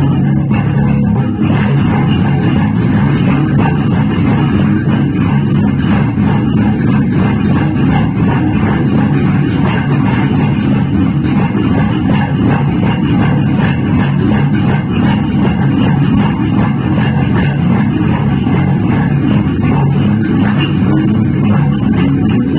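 Electric bass guitar played with the fingers, a steady funk groove of continuous notes with no pauses.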